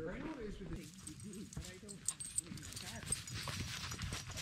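Faint, indistinct chatter of people talking, with no clear non-speech sound standing out.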